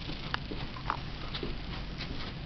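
A cat and dog moving about and scuffling: a few light taps and brief, faint squeaky sounds over a quiet background.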